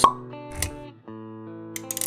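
Intro-animation music with sound effects: a sharp pop at the very start, a softer thump about half a second later, then held musical notes with a few quick clicks near the end.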